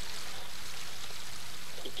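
Flowing river water rushing steadily, an even hiss with no break.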